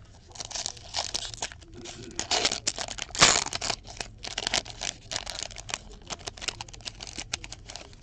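Foil wrapper of a 2016-17 Fleer Showcase hockey card pack crinkling as it is handled and ripped open. The loudest rip comes about three seconds in, and the crinkling and crackling go on for several seconds after it.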